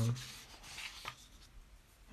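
Faint rubbing of a hand sliding over paper sheets on a table, with a light tap about a second in.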